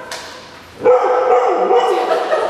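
A Siberian husky giving a loud, wavering vocal call that starts about a second in and lasts about a second, its pitch going up and down as it goes.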